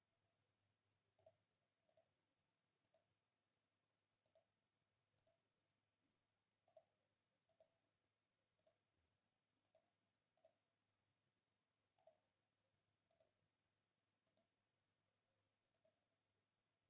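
Near silence, with very faint computer mouse clicks at irregular intervals, roughly one a second.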